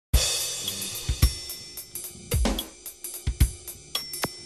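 Drum kit playing: the sound opens with a cymbal crash, followed by bass drum and snare hits with hi-hat ticks between them.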